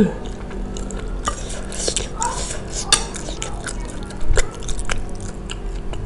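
Chewing of yamin noodles, with scattered small clicks of a metal fork against a ceramic plate and a louder clink a little past four seconds in.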